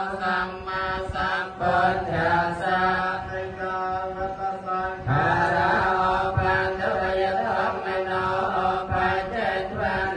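Buddhist chanting in Pali: voices intoning verses on a steady, held pitch, phrase after phrase.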